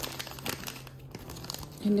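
A thin clear plastic bag crinkling in the hands as a small toy figure is taken out of it, with a short lull about a second in.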